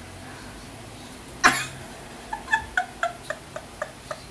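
A woman's sudden loud outburst about a second and a half in, then high-pitched laughter in short, even bursts, about four a second.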